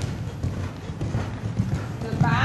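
Hoofbeats of a horse cantering on a sand arena surface: a run of low, repeated thuds.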